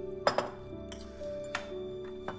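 Soft background music with sustained notes, over which metal chopsticks clink against china dishes: a quick double clink about a quarter second in, and another single clink about a second later.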